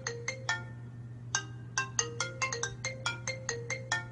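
iPhone ringtone of iOS 7 playing: a quick melody of short electronic notes, pausing briefly about half a second in before running on.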